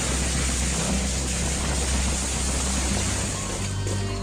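A loud, steady rushing noise from amateur phone footage, with a low, steady background music bed underneath. The rushing fades out near the end, leaving the music.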